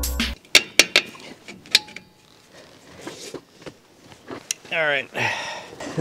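Sharp metallic clicks and clanks from hands and tools working on a drum brake assembly: four quick clicks in the first two seconds, the last leaving a brief ring. Near the end come two short hums from the mechanic.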